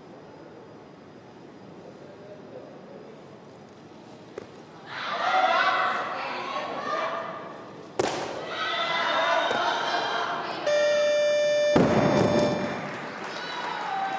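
Weightlifting crowd shouting and cheering through a clean and jerk, with a sharp crack about eight seconds in as the bar goes overhead. Near the end the referees' down signal sounds, a steady electronic buzzer lasting about a second, and the loaded barbell is dropped onto the platform with a heavy thud, followed by more cheering.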